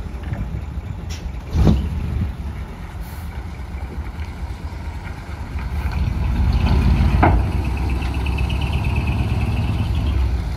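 Diesel engine of a decorated heavy truck pulling away and turning onto the road. There is a short air-brake hiss about one and a half seconds in and another a little past seven seconds, as the engine gets louder while it accelerates.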